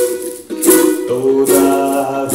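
Ukulele strummed, chords ringing between strokes, with a change of chord about a second in.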